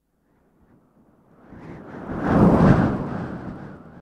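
A rumbling whoosh sound effect for a logo card. It swells up from about a second and a half in, peaks about a second later, and dies away.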